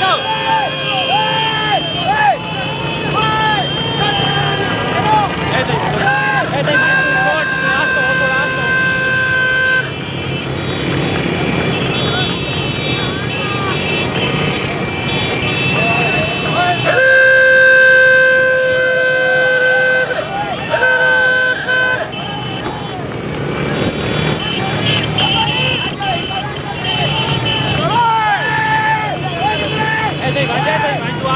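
Vehicle horns held in long blasts, about seven seconds in and again from about seventeen seconds, the later one the loudest, over the steady running of many motorcycle engines and men shouting.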